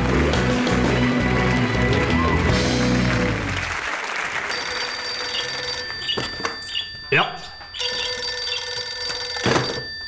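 Band music with applause fades out in the first four seconds; then a telephone rings twice, each ring about a second and a half long, with short clatters between the rings.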